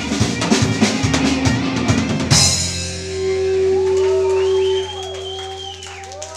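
A folk-punk band plays live with a full drum kit and electric guitars, in a fast drum-driven passage that ends on a crash about two seconds in. After the crash, the electric guitars ring out in sustained notes that bend in pitch, swell, and drop sharply in level near five seconds, closing the song.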